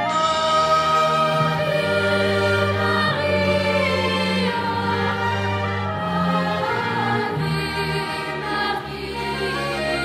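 Children's choir singing a slow song in long held notes, over a steady low instrumental accompaniment.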